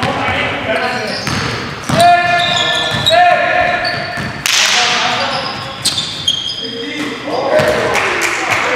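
Basketball game on an indoor gym court: sneakers squeaking sharply on the hardwood floor, the ball bouncing a few times, and players' voices, all ringing in the large hall.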